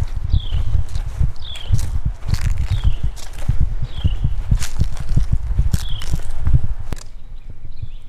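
Footsteps of someone walking while holding the camera, heard as a run of low thuds and rumble on the microphone. Over them a bird repeats a short, high, falling whistle about once a second. Both stop about a second before the end.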